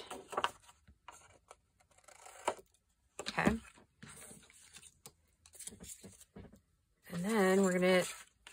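Cardstock being cut at the corners and handled: a string of short, soft scratching and rustling sounds, with a brief voice sound about three and a half seconds in.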